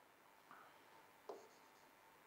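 Near silence with a few faint taps and strokes of a pen writing on a display board.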